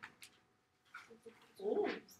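A short stretch of quiet, then a brief, whiny human vocal sound near the end.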